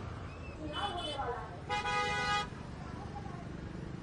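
A vehicle horn sounds once, a steady tone lasting under a second about two seconds in, over low background noise and faint voices.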